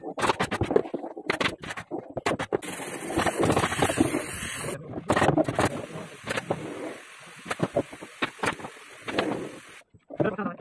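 Handwork on foam upholstery sheet: large scissors snipping and scraping through the foam, then a steel ruler set down and a chalk marking lines on the panel, giving a run of sharp clicks and scrapes. A steady rushing noise comes in for about two seconds in the middle.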